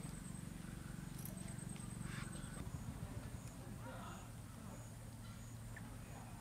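Faint outdoor rural background: a low steady hum, a faint high chirp repeating about every two-thirds of a second, and a couple of faint distant calls.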